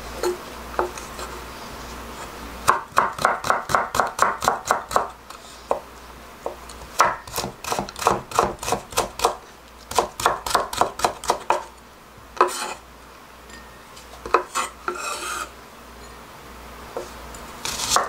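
Chef's knife cutting a carrot into thin matchsticks on a wooden cutting board: three runs of quick strokes, about six a second, then a few single cuts.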